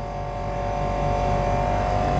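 A steady machine-like hum: several steady tones over a low drone, growing slightly louder.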